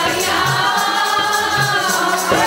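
Sikh kirtan: many voices singing together over harmonium and tabla, with low tabla strokes about once a second and a steady high jingling beat.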